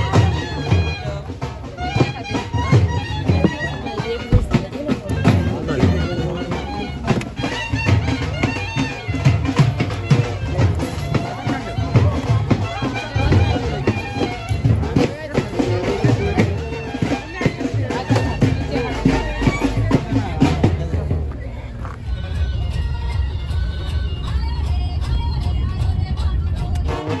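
Festive band music: a reedy wind instrument plays a melody over regular drum strokes, with crowd voices. About five seconds before the end the music drops back to a fainter level over a steady low rumble.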